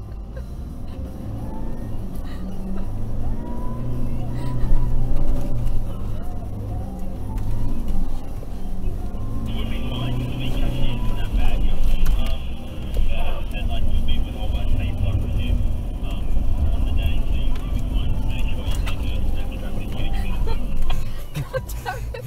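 Toyota Prado 150's four-cylinder turbo-diesel heard from inside the cabin, labouring in low range up a soft-sand dune track, its revs rising and falling as it climbs, with the traction control system clicking away. A steady higher-pitched sound joins about ten seconds in and stops shortly before the end.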